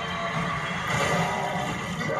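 Movie trailer soundtrack played back through a speaker: a dense roar of an arena crowd mixed with dramatic score, swelling about a second in.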